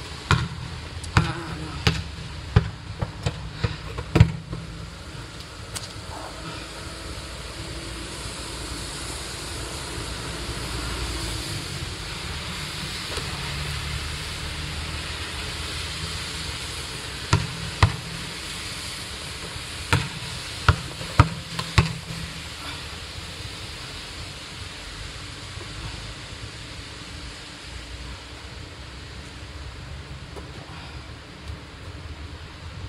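A football knocking sharply against tiled paving and the player's body during freestyle neck-roll practice: a quick run of hits in the first few seconds, then two more clusters a little past the middle. Under it runs a steady rushing background noise.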